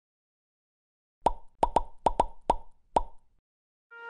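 Seven short pop sound effects from a logo animation, coming in quick, uneven succession after about a second of silence, the last just before the three-second mark. Music starts right at the very end.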